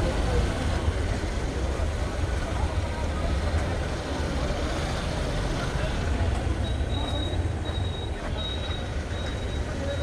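Motorcycles running on a practice course over a steady low rumble, with voices in the background. From about seven seconds in, a high beep repeats at a steady pace.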